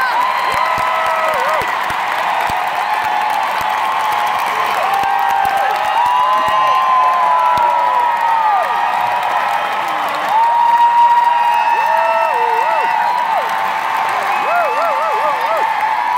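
Arena concert crowd cheering and applauding at the end of a song, many high-pitched screams and whoops rising and falling over the clapping.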